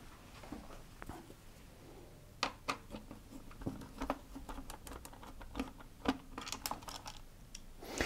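Faint, irregular small clicks and taps of a cross-head screwdriver working small screws out of a plastic control panel, starting about two and a half seconds in.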